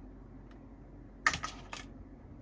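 Hard plastic toy pieces clicking and clattering as a plastic toy hairbrush is set down among other plastic vanity-set pieces: a quick cluster of clicks a little over a second in, then one more click shortly after.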